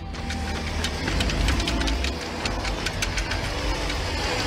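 Film soundtrack with a low mechanical rumble that builds slightly, overlaid with many irregular sharp clicks and knocks.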